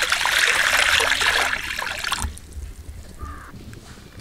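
Water poured from a metal pot into an iron wok, a steady splashing pour that stops suddenly a little over two seconds in.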